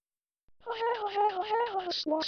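Synthesized text-to-speech voice laughing a drawn-out 'hahahaha', one held, slowly falling pitch chopped into rapid syllables. It starts about half a second in, after a short silence.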